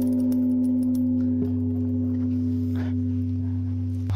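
Large bronze Korean-style bell, struck just before with a hanging wooden log, ringing on with a deep steady hum and several higher tones, fading only slowly. It is loud.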